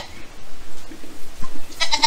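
Newborn Nigerian Dwarf goat kid bleating once, high-pitched, near the end.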